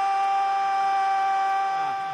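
A man's drawn-out goal cry, a long 'gooool' held on one steady high note, stopping just before two seconds in.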